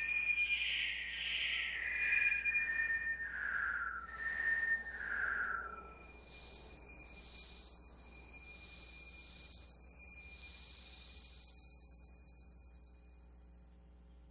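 Synthesized electronic tones from the close of an electroacoustic miniature made from sounds generated in Audacity: high held whistling tones with several falling glides, then a series of swelling pulses around one high tone that fade out and stop at the end.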